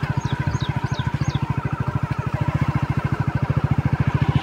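A small engine running steadily with a fast, even low pulse. Four short high chirps, each falling in pitch, come in the first second and a half.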